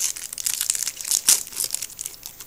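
Foil wrapper of a Pokémon booster pack crinkling and tearing as hands rip it open, in quick irregular crackles that are loudest a little past the middle.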